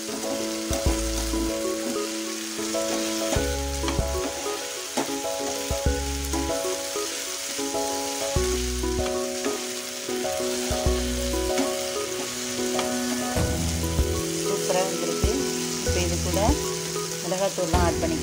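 Diced potatoes and onion sizzling in oil in a nonstick frying pan, stirred and scraped now and then with a flat spatula. Background music plays underneath.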